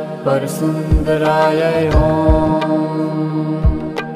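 Devotional mantra-chanting music: a chanted syllable near the start, then a steady drone with a few low drum beats and a held, wavering sung tone.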